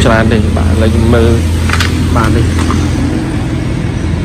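Speech over a steady low engine hum from the 2002 Hyundai Starex van idling.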